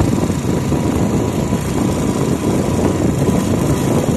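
Steady rush of wind buffeting the microphone over a running engine, the sound of riding along a road in a moving vehicle.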